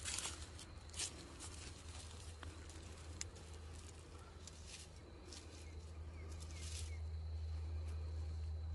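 Faint outdoor ambience: soft, scattered rustles and light crunches of footsteps on leaf-littered garden soil, with a few faint high chirps in the middle and a steady low hum underneath.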